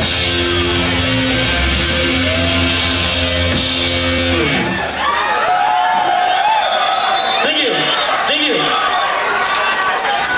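Punk rock band finishing a song live: drums and cymbals crash under a held distorted guitar chord that stops about halfway through. The audience then shouts and cheers.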